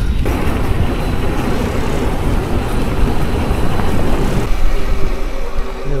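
Wind rushing over the camera microphone and tyre noise from a mountain e-bike rolling fast along a wet lane. Near the end the rush eases and a steady whine comes in.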